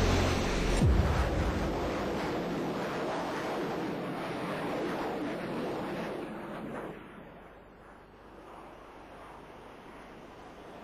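Military jet aircraft flying past: a loud jet roar whose pitch drops about a second in as it goes by, then fading away over the next several seconds.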